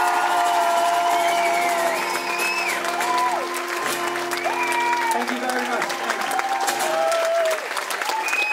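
Acoustic guitar ringing with sustained chords under audience applause, with whoops and cheers from the crowd; the guitar stops near the end.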